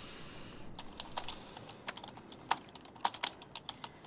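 Typing on a computer keyboard: irregular keystroke clicks, uneven in loudness, one sharper click about two and a half seconds in. A soft hiss runs under the first half-second.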